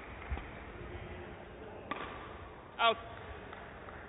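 Badminton rally: a dull footfall thud on the court, then a sharp crack of a racket striking the shuttlecock about two seconds in. A short shouted "Out" line call follows near the end and is the loudest sound.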